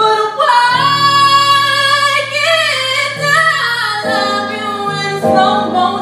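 Female singer's voice in long, sliding sung notes over sustained chords from a Yamaha Motif ES8 keyboard, the held chords changing a few times.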